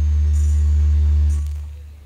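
A live band's last held note at the end of a song: a loud sustained low bass chord that rings on and then dies away in the last half second or so.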